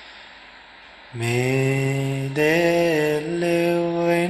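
A man's voice chanting into a microphone in long, drawn-out held notes, starting about a second in after a short pause and stepping up and down between a few pitches: a slow Buddhist devotional chant.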